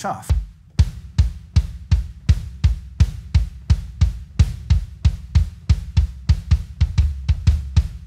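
Bass drum played with the foot pedal in a steady run of strokes, about three a second, each made by dropping the foot onto the footboard and pushing off, letting the leg's weight drive the beater.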